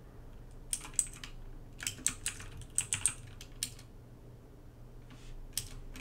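Computer keyboard being typed on: scattered keystrokes in small quick clusters separated by short pauses.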